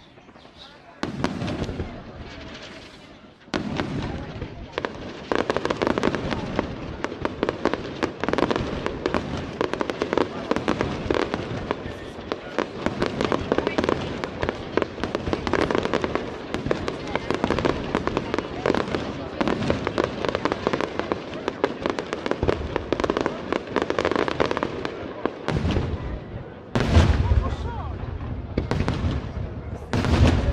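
Aerial fireworks display by Pirotecnica Giuseppe Catapano: after a quieter opening, a dense run of crackling and popping shell bursts from about three seconds in, then heavy booming reports near the end.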